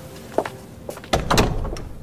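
Heavy church door shutting: a small click about half a second in, then a deep thud a little after a second in that dies away in the room's echo.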